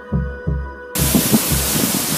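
Background music with a low pulsing beat about twice a second, cut off suddenly about a second in by the steady rush of a waterfall.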